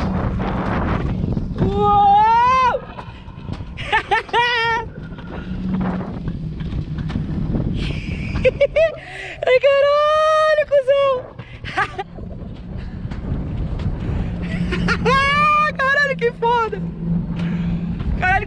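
A man on an alpine coaster sled lets out four drawn-out, sliding whoops of excitement, the longest in the middle. Under them runs the steady low rumble and hum of the sled's wheels on its metal rail track.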